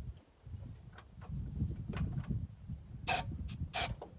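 A spray can hissing in two short bursts near the end, over a low uneven rumble.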